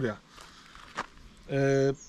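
A man's voice: a pause with one faint click about a second in, then a held, flat hesitation sound ('yyy') for about half a second before he speaks again.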